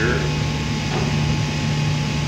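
A steady low hum with an even background rush, in a pause between a man's words. The tail of his last word is heard right at the start.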